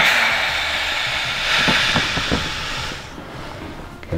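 A long, breathy exhale, with three faint pops about halfway through: neck joints cracking during a chiropractic neck adjustment.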